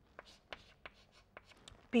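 Chalk on a blackboard: a quiet string of short, sharp strokes and taps as a line is drawn and a label is written.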